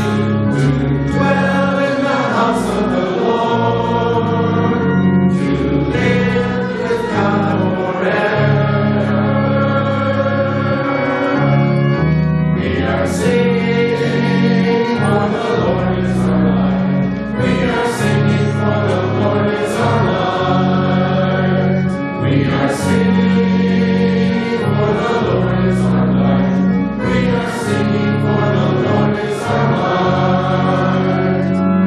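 A church congregation singing a hymn together over an instrumental accompaniment of sustained low chords.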